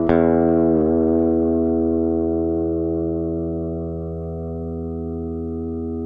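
Electric guitar chord struck once near the start and left ringing, held steady for several seconds as it slowly fades, with a brief wavering in pitch about a second in.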